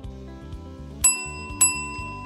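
A metal counter service bell struck twice in quick succession, each strike ringing on brightly: an impatient customer calling for attention.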